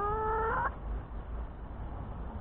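A domestic hen gives a single drawn-out call of under a second, rising slightly in pitch and cutting off abruptly.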